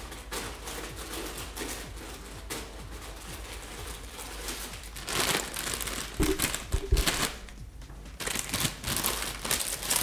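Crinkling and rustling of a foil-lined Cheetos snack bag being handled and opened for someone to reach into. It comes in uneven bursts, louder in the second half.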